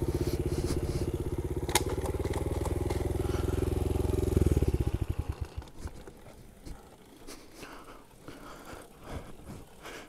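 Honda CRF70 pit bike's small four-stroke single running steadily at low speed. About four and a half seconds in it is switched off, and the firing slows and dies away within a second. Faint scattered crunching and rustling follows.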